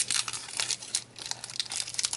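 Foil wrapper of a Japanese Pokémon card booster pack crinkling and crackling irregularly as it is torn open by hand.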